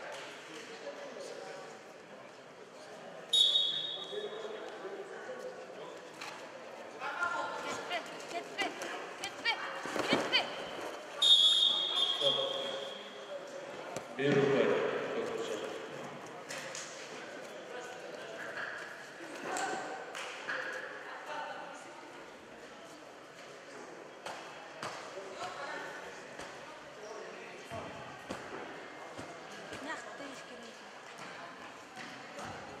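Belt-wrestling bout on a padded mat in a reverberant sports hall: voices talk and call around the mat, with two short shrill referee's whistle blasts about three and eleven seconds in. About fourteen seconds in comes a heavy thud as a wrestler is thrown down onto the mat.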